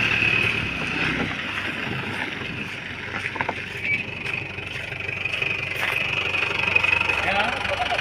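Mahindra Bolero pickup's diesel engine running as it drives slowly past over gravel, its low rumble dropping away about a second in as it moves off.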